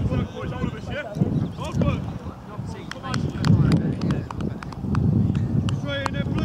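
Indistinct calls and talk from footballers and spectators around the pitch, with wind buffeting the microphone in repeated low rumbles.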